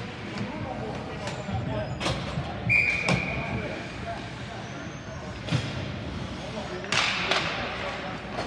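Ice hockey rink sounds: one short, steady whistle blast about three seconds in, and several sharp knocks of sticks and puck on the ice and boards, over scattered voices.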